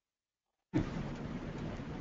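Dead silence, then about two-thirds of a second in a steady rushing hiss with a low rumble cuts in: line noise from a remote caller's open microphone on a web-conference call, whose headset his computer won't accept.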